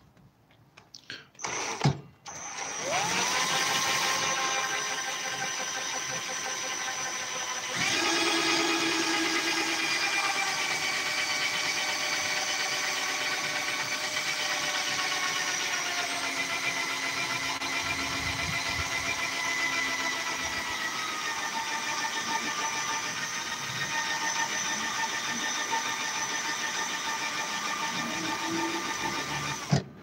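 Cordless drill spinning a circular saw's armature while a needle file is held against its copper commutator to clean the burnt bars. The drill winds up a couple of seconds in, runs as a steady whine that grows louder about eight seconds in, and stops at the end.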